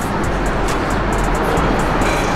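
Steady road traffic noise, with background music.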